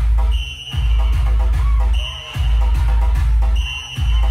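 Loud, bass-heavy electronic dance music played over a large outdoor DJ sound system. A deep bass note is held and cut off briefly about every second and a half, with a short high synth beep repeating each time.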